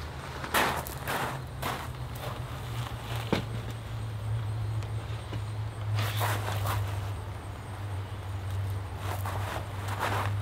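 Footsteps on a gravel floor, in scattered short strokes with a busier stretch about six seconds in, over a steady low hum.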